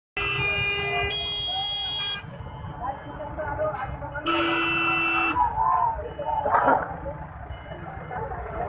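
Vehicle horns sounding over crowd noise. The first blast lasts about two seconds and steps up in pitch halfway through; a second blast of about a second comes around four seconds in. A crowd's voices carry on underneath.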